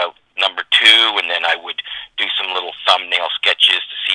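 Continuous speech over a telephone line: a caller talking in short phrases, the voice thin and cut off at the top as phone audio is.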